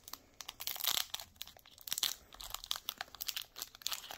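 Foil Pokémon TCG booster pack wrapper crinkling and tearing as it is pulled open by hand, in an irregular string of sharp crackles.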